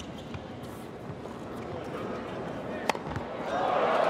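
A tennis ball is struck with a racket once, sharply, about three seconds in, over a low arena crowd murmur. Just after it the crowd noise swells and stays up to the end.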